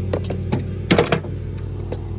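A few short clicks and knocks from handling a hand cable cutter and a heavy red cable, with a small cluster of them about a second in, over a steady low hum.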